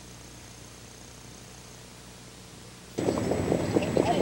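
Low hiss and hum of an old videotape soundtrack with a faint high whine that stops a couple of seconds in; about three seconds in, louder background noise cuts in suddenly.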